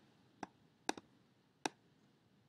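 Three faint computer mouse clicks, spaced unevenly about half a second apart, made while an arrow is being placed on a slide.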